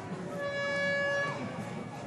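A single steady horn-like note, held for about a second, with a faint open-air background hum.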